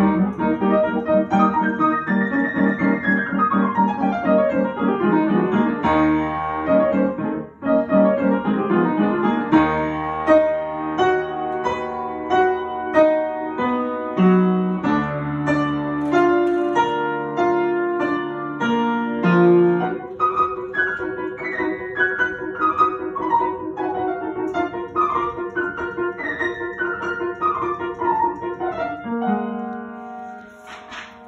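Upright piano being played: a continuous passage with quick descending runs, a brief break about seven and a half seconds in, held chords in the middle, then a string of repeated descending runs in the second half.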